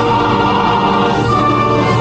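A choir singing a slow piece in long held chords over instrumental accompaniment, typical of a recorded national anthem played for a standing audience.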